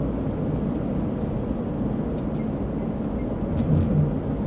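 Steady engine and tyre noise inside a moving car's cabin, with a short noise near the end.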